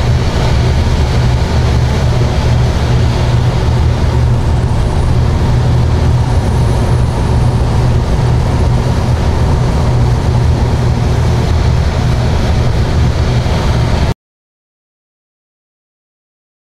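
Steady low engine drone from a light tow plane, heard from inside a glider's cockpit during an aerotow climb, under a constant rush of air noise. It cuts off suddenly near the end.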